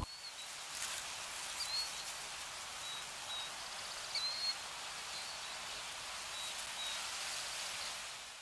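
Outdoor ambience: a steady even hiss with several short, high bird chirps scattered through it.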